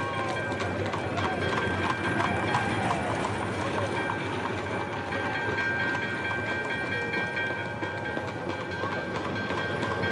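Hooves of galloping horse-drawn fire engines and their wheels clattering over cobblestones in a steady rumbling din, with voices in the background.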